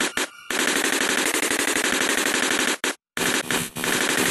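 Machine-gun fire sample in a hardcore gabber track: a rapid, evenly spaced rattle of about a dozen hits a second. It breaks off for a moment about three seconds in, then starts again.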